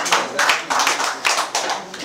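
Audience clapping, a dense patter of claps that eases slightly near the end.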